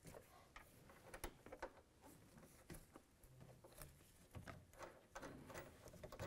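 Near silence with faint, scattered small clicks and taps: metal mounting nuts being handled and threaded onto a door-mounted side mirror's studs by hand.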